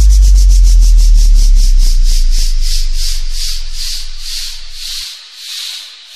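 Electronic outro effect closing a DJ remix: a deep bass boom dies away over about five seconds under a rhythmic hiss whose pulses slow from about eight a second to about two, sinking in pitch and fading.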